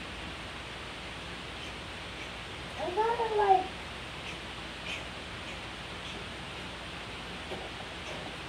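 A single short, high-pitched vocal cry that rises and then falls in pitch, lasting under a second about three seconds in, over a steady background hiss.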